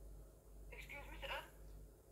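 A brief, faint voice speaking for about half a second, thin and tinny as if coming through a phone or call speaker, about three quarters of a second in, over a low steady hum.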